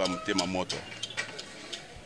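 A man's voice speaking in the first moment, then quieter background crowd noise with scattered short clicks.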